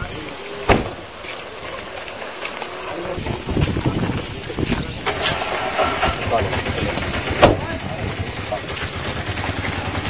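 Vehicle engine noise with men's voices in the background, and two sharp knocks: one about a second in and one about seven and a half seconds in.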